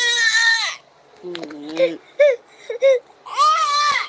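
A toddler crying: two high-pitched wails, one at the start and one near the end, with shorter, lower voice sounds in between.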